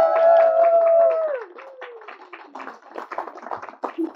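A small group of wedding guests clapping, with several voices holding a long cheer that falls away about a second and a half in.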